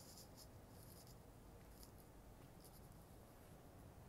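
Near silence: room tone with a few faint, short, scratchy rustles.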